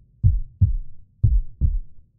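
A deep, low beat of short thumps in pairs, a double thump about once a second like a heartbeat.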